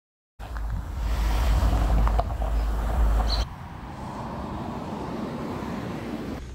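Wind buffeting an outdoor microphone, a heavy low rumble with steady hiss, starting abruptly just after the start. About three and a half seconds in it drops sharply to a quieter, steady outdoor hiss.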